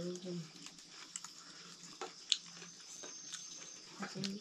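Someone chewing food: faint, irregular mouth clicks and small crunches, with one sharper click a little over two seconds in.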